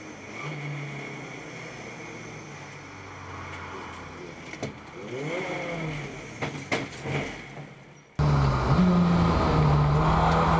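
The 360 bhp Skoda Citigo's 2.0 TDI common-rail diesel engine heard from inside the caged cabin while lapping a track, running steadily with a rise and fall in pitch and a few sharp clicks midway. About eight seconds in the engine suddenly becomes much louder.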